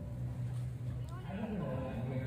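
A person's voice coming in about a second in, over a steady low tone.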